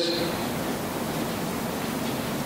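Steady, even hiss of background noise from the room and the microphone, with no distinct event.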